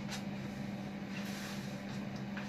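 A steady low mechanical hum with a couple of faint clicks.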